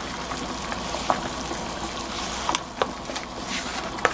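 Pot of seaweed soup at a rolling boil, bubbling and hissing steadily, with a few light clicks as pieces of flounder are slid into it off a board with a wooden spoon.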